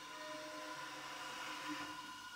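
Soft, faint held tones from a contemporary classical chamber septet of flute, clarinet, strings, piano and percussion: a hushed sustained passage with no attacks, one quiet tone entering briefly in the first second.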